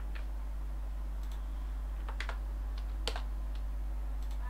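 About five scattered, sharp clicks from computer keys and mouse as text is selected and reformatted, the loudest one about three seconds in, over a steady low electrical hum.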